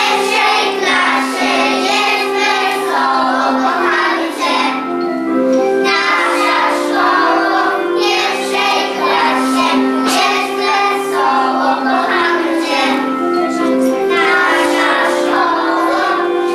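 A group of young children singing a song together over instrumental accompaniment.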